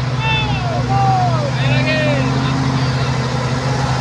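Mitsubishi Fuso tanker truck's diesel engine running steadily as it climbs a muddy slope, with a few high, rising-and-falling calls over it in the first two seconds.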